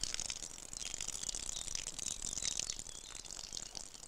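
A woman urinating outdoors: a steady, quiet, hissing stream splattering onto grass and leaves, with small crackles through it.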